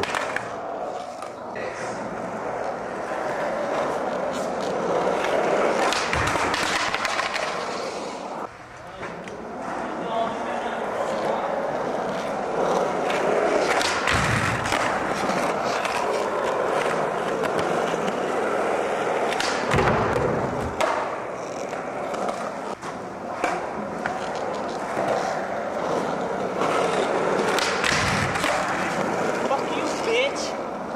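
Skateboard wheels rolling and pushing along a smooth concrete floor, with several heavy thumps of the board popping and landing spread through the run.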